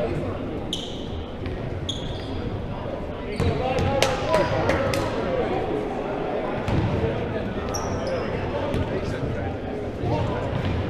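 Basketball game sounds on a hardwood court in a large gym: a ball bouncing, with sneakers squeaking sharply on the floor about one second in, two seconds in and again near eight seconds.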